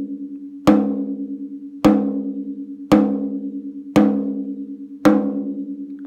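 Drumhead struck five times with a wooden drumstick near a lug, about once a second, each hit ringing out with a steady pitch before the next. Each strike is a tuning tap for measuring the lug pitch, which reads about 208–209 Hz.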